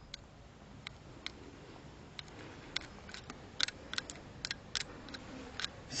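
Irregular sharp clicks and snaps from a car battery charger's clamp being tapped against the clip on a dead NiCad battery's lead, arcing on each brief contact. They come faster in the second half. Each tap is a short zap meant to knock down crystal dendrites so the battery will take a charge again.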